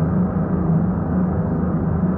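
A steady, low droning rumble with a constant hum in it, an ambient sound-design drone laid under the scene.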